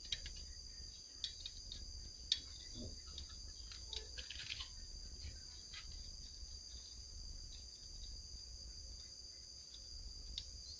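Steady high-pitched drone of insects, with a few faint light clicks and taps of hand tools on the metal parts of a mini tiller being assembled.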